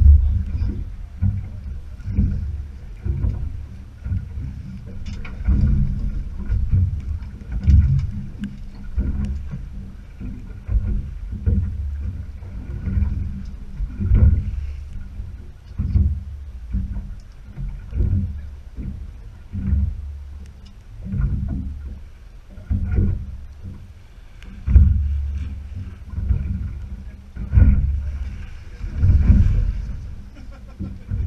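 Small boat's hull slapping and knocking on choppy sea, a low, uneven bump every second or two over a steady rumble.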